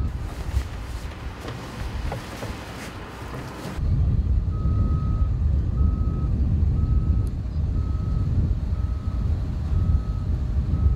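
Heavy earthmoving machine's backup alarm beeping at a single pitch, about once a second, over a diesel engine's low rumble; these come in about four seconds in, after a quieter wash of wind-like noise.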